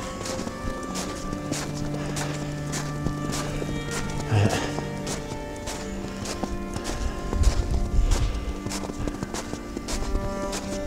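Footsteps crunching through fresh snow at a steady walking pace, about two steps a second, under background music with long held notes. A low rumble comes in about three-quarters of the way through.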